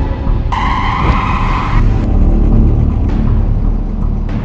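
Car tyres screeching in a skid for about a second, starting about half a second in, over a steady low rumble and background music.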